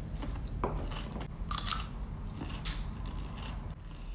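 Mouth-close chewing of a bite of raw cucumber: crisp, irregular wet crunches as the flesh breaks down.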